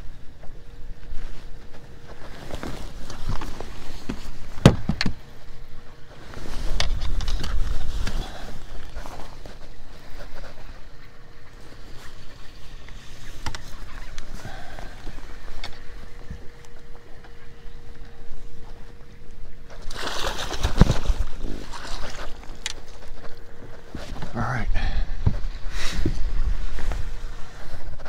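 Handling noise on a fishing boat's deck while a caught largemouth bass is unhooked from a crankbait: scattered knocks, clicks and rustling, with heavier low bumps a few times. A faint steady hum runs underneath most of the time.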